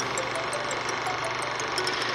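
Film projector running, a steady mechanical noise.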